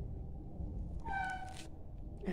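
A single short, high-pitched cry about a second in, lasting about half a second, over a low steady hum.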